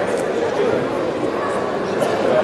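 Indistinct voices of a spectator crowd calling out and chattering, steady throughout.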